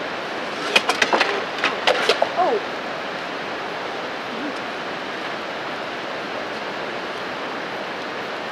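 Steady rushing of a nearby river. Between about one and two and a half seconds in comes a short burst of sharp clattering knocks, followed by a brief falling vocal sound.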